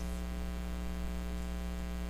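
Steady electrical mains hum with a buzzy stack of evenly spaced overtones, unchanging throughout.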